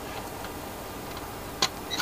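A single short click about one and a half seconds in as test leads are handled, over a steady low background hiss.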